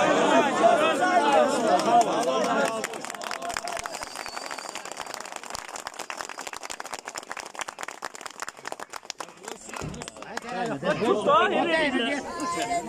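Men's voices shouting loudly, then a crowd clapping their hands for several seconds, a dense patter of claps; talking starts again near the end.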